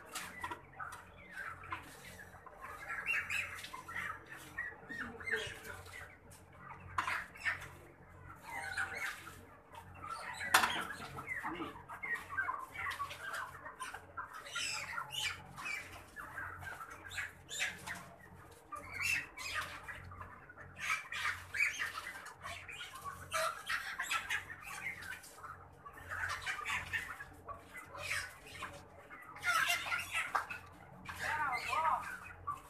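A crowd of crated white chickens calling in short squawks and cheeps throughout, with some wing flapping. One sharp knock about ten seconds in is the loudest moment.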